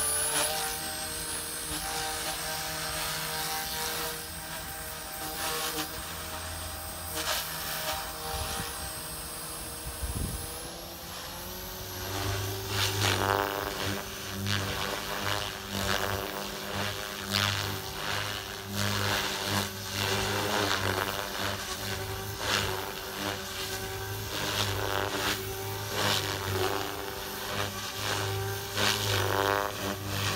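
Electric RC helicopter (ALZRC Devil 380) in flight: steady whine of the motor and main rotor with a buzz. About a third of the way in the pitch shifts, and from then on the sound is louder and rises and falls as the helicopter manoeuvres.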